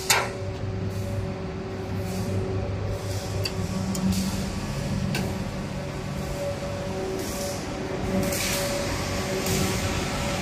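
Inverter-driven electric motors of a blown film machine running after power-up. A steady hum at several pitches steps up in pitch about four seconds in, with short bursts of hiss now and then.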